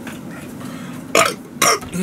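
A man burping twice, two short loud belches about half a second apart, after gulping down a bottled drink.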